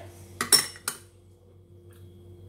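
A small ceramic spice dish knocking against the rim of a glass mixing bowl as curry powder is tipped out: three sharp clinks within half a second, the middle one loudest and ringing briefly.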